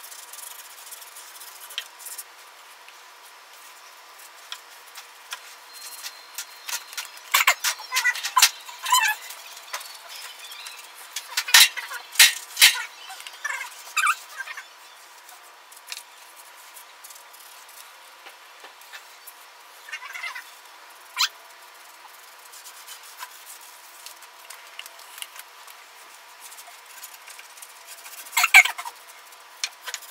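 Paintbrush scrubbing paint onto rough weathered pallet boards, in spells of quick back-and-forth strokes with occasional squeaks from the bristles on the wood; the busiest spell comes in the first half and a short loud one comes near the end. A faint steady hum sits underneath.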